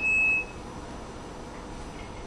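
A single short electronic beep: one steady high tone about half a second long, then only faint room noise.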